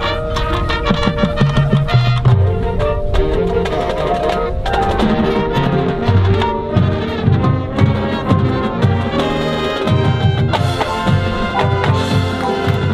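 Marching band playing: percussion struck throughout over brass chords, with a run of quick low drum hits starting about five seconds in.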